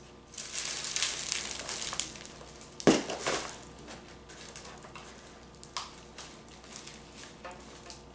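Tissue paper and paper shred rustling and crinkling as cardboard boxes are pushed into a plastic basket, with one sharp knock about three seconds in and a few lighter clicks and rustles after it.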